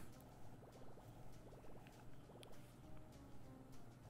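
Near silence with faint slot-game sound effects: soft clicks and a few short runs of rapid ticking.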